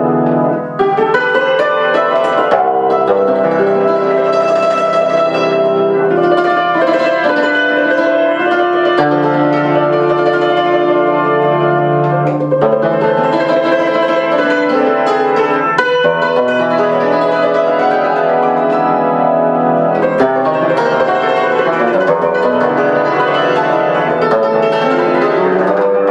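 Concert cimbalom played with soft hammers in Hungarian folk style, a continuous flow of struck string notes that ring on over one another and sound close to a piano. There is a brief drop in level about a second in.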